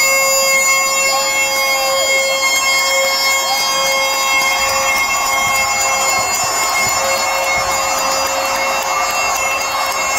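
Bagpipes played live through an arena PA: steady drones held under a slow chanter melody, over crowd noise.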